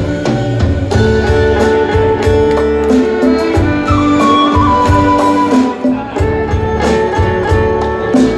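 Live band playing an instrumental passage: long held melody notes, with a higher line near the middle, over bass and drums.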